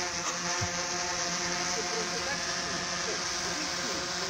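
Quadcopter drone's propellers buzzing steadily in flight, an even multi-toned whine.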